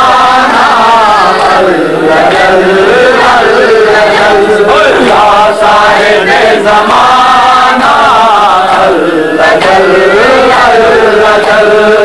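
A group of men chanting a devotional noha together without instruments, the voices loud and unbroken as they carry the melodic refrain.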